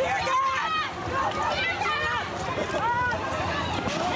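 Crowd of protesters shouting and yelling as they flee tear gas, several raised voices overlapping with no clear words.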